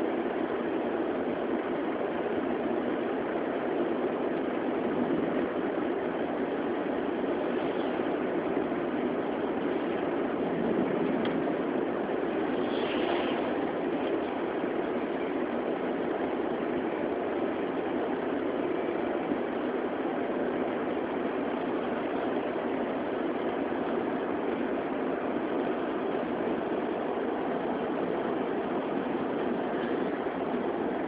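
Steady engine and tyre noise of a car driving on a snowy road, heard from inside the cabin.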